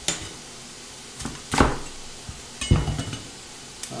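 Tap water running steadily into a kitchen sink, under a few sharp knocks and clatters of a knife and kale stalks on a plastic cutting board, the loudest about a second and a half in, with a brief metallic clink near three seconds.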